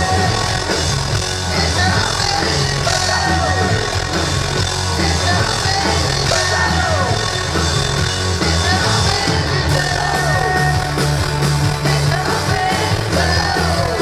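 Live band playing a loud rock song, acoustic guitars over a steady low bass line, with many notes gliding up and down.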